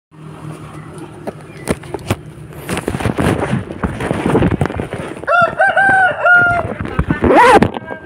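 Rooster crowing once, loud, about five seconds in: one long crow held in several steady pitched segments, with a shorter rising-and-falling call just after it. Before the crow there are scattered knocks and rustling.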